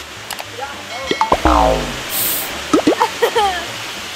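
Steady rush of falling water, with short wordless vocal sounds over it; about a second in, one sound slides down steeply in pitch.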